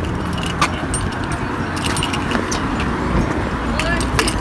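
Street noise while walking: a steady low traffic rumble, with scattered light clicks and jingling like keys over it.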